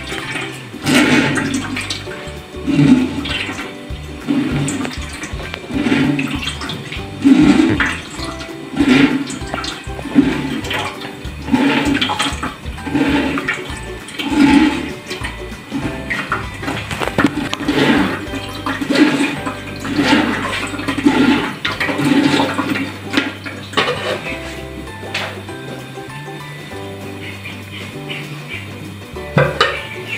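A metal spoon is stirring and pushing liquid ground maize through a plastic sieve into an aluminium pot. The liquid sloshes and trickles in repeated strokes, about one a second, easing off near the end. This is the maize being strained of impurities.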